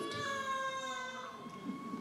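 A woman in the audience calls out one long, high, drawn-out vocal sound of agreement, holding a nearly steady note that fades out, quieter than the speech at the podium.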